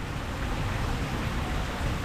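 Steady outdoor background noise in a pause between words: an even low rumble with hiss, with no distinct events.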